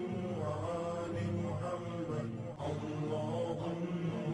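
Chanted vocal music: a voice holding a slowly moving melody, with no beat.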